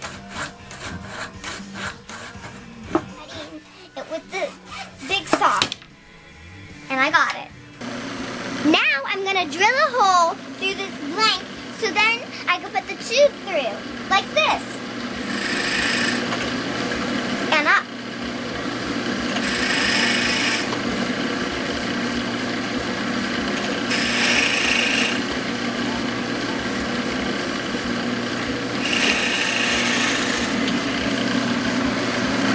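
Hand saw strokes through a small wood pen blank in the first few seconds. Later, after a stretch of rising and falling tones, a bench drill press motor runs steadily, with four louder surges as the bit bores the pen blank for its brass tube.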